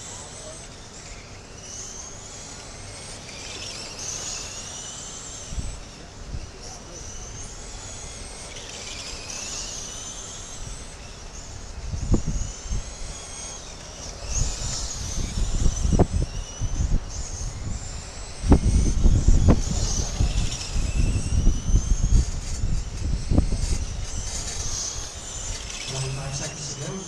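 Radio-controlled late-model oval race cars lapping, a high motor whine rising and falling each time a car passes, every two to three seconds. A gusty low rumble comes and goes from about halfway and is loudest late on.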